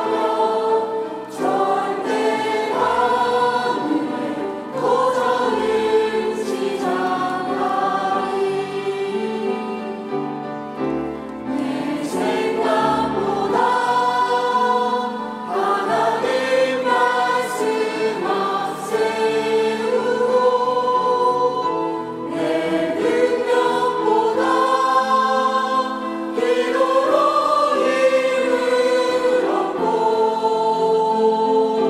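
A church choir of adults and children singing a Korean worship song together, in continuous phrases.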